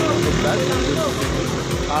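A man's voice in short, hesitant bits of speech over a continuous low rumble of outdoor background noise.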